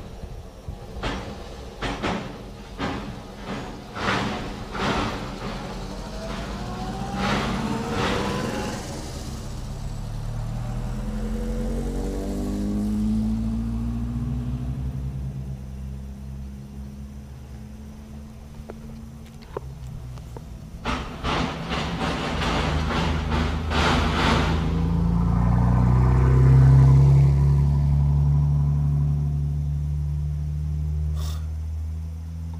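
Car engines passing on a road: one engine's note falls in pitch as it goes by, and near the end another engine grows louder and rises. Scattered sharp knocks come in the first seconds and again about twenty seconds in.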